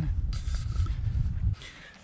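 Low rumble of wind buffeting the microphone, with rustling handling noise as the camera is moved. Both drop away suddenly about one and a half seconds in.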